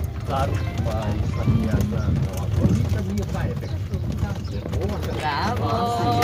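Voices talking over the steady low rumble and rattle of an open-sided tourist vehicle in motion.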